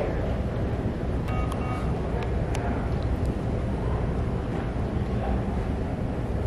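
Steady low background rumble, the room noise of a large store, with a few faint short clicks between about one and three seconds in.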